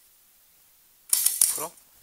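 Near silence for about a second, then a couple of sharp metallic clicks as the release buttons on a light panel's mounting bracket are lifted and the bracket comes free.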